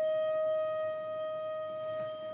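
A single sustained note from a solo wind instrument, held steady in pitch and slowly fading, with no other instruments sounding.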